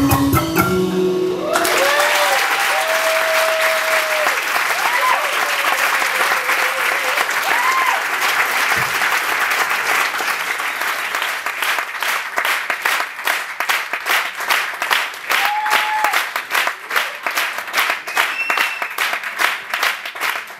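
Live drum and percussion music stops about a second and a half in, and audience applause follows with cheering shouts over it. Toward the end the applause thins out into distinct separate claps.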